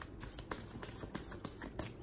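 Oracle cards being shuffled and handled in the hands: a few light, irregular clicks and flicks of card stock.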